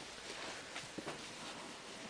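Faint handling noise as hands rummage in an old leather bag, with a few soft clicks.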